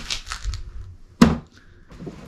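Blue Bosch plastic tool case being handled: a few light clicks, then one sharp knock about a second in.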